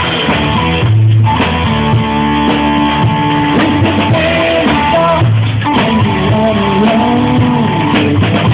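A live rock band playing through PA speakers: electric guitars and a drum kit, with long held melody notes that slide in pitch in the second half. The sound is dull, with no highs, as from a phone recording.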